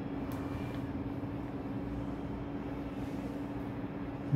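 Steady background noise with a constant low-pitched hum, and one faint click shortly after the start.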